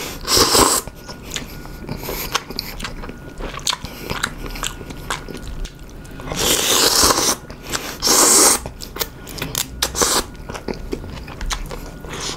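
A person slurping ramen noodles from a bowl of broth and chewing with an open, wet mouth. Long, loud slurps come at the start and twice about two-thirds of the way through, with smacking chewing clicks in between.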